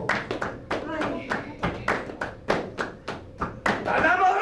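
Flamenco palmas: several people clapping their hands in a brisk rhythm, about four to five claps a second, with short snatches of voice between the claps. Singing comes back in right at the end.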